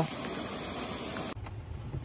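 Steady hiss of heavy rain. About a second and a half in, it cuts off suddenly and gives way to the low steady hum of a car heard from inside its cabin.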